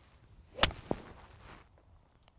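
A golf iron striking the ball off the turf in a full swing: one sharp, crisp impact about half a second in, then a fainter short knock. The strike takes the ball first and then the turf, with the divot past the ball.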